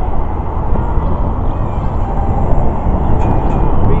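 Electric guitar strummed through an amplifier, heard as a loud, muddy low-heavy wash of chords with little clear pitch between sung lines.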